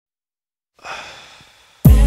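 The opening of an R&B song: a soft breathy hiss fades in and out for about a second, then the track comes in loudly with a deep bass hit and sustained chords just before the end.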